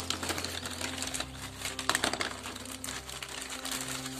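Clear plastic bag crinkling and rustling in irregular crackles as small hands open it and pull out the green plastic planter feet inside.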